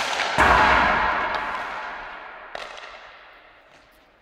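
Ice hockey shot: a sharp crack of the stick on the puck, then less than half a second later a loud, deep impact of the puck that rings out in a long echo, fading over about three seconds. Fainter clicks follow later.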